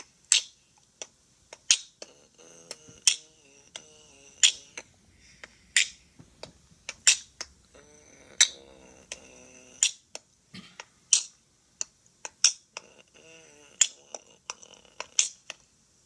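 A home-made rap beat played back from a computer recording: sharp snap-like clicks, a strong one about every second and a half with lighter clicks between, over faint pitched, voice-like tones.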